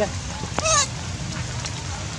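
A young macaque gives one short, wavering, high-pitched call about half a second in, over a steady low background rumble.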